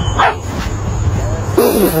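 A puppy gives a short, high yip that falls in pitch about a quarter second in, over steady outdoor background noise; a person laughs near the end.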